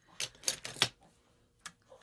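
Costume jewellery being handled: a quick run of sharp clicks and clatters as the pieces knock together in the first second, then one more click near the end.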